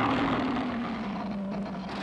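Godzilla film sound effects: a dense, loud noise with a steady low hum underneath, slowly fading, as the monster roars and fires its atomic breath.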